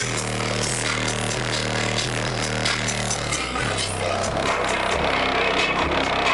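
Hip-hop track played loud through a car's subwoofer system, a Digital Designs 9917 driven by two Rockford Fosgate 1501bd amplifiers, heard from inside the cabin. Deep held bass notes dominate and change pitch every second or so.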